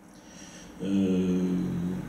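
A man's voice through a microphone holding one long, level-pitched hesitation sound, an 'ehhh' filler, starting about a second in after a short quiet pause.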